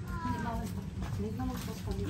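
Brief high-pitched vocal sounds, like a small child's, with quiet adult voices over a steady low hum.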